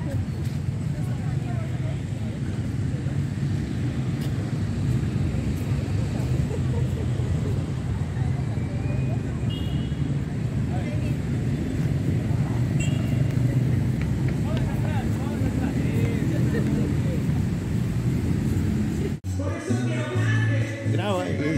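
Outdoor town-square ambience: a steady low rumble with faint voices here and there. It cuts off suddenly near the end.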